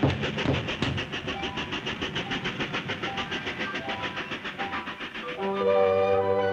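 Train sound effect for a cartoon train: an even, fast chugging rhythm of about eight beats a second that fades a little. Orchestral music comes in near the end.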